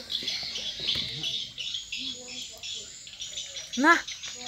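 Small birds chirping in quick repeated high notes.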